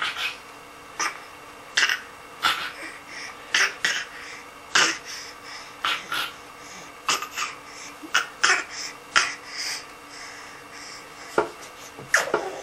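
A baby giving short put-on coughs over and over as a way of 'talking', about a dozen and a half at uneven spacing, some in quick pairs.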